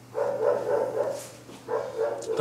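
A dog barking, two calls: one about a second long shortly after the start and another beginning near the end.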